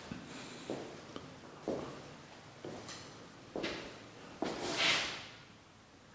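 Footsteps on a floor strewn with grit and broken glass, about one step a second, with a longer, louder scuffing step near the end.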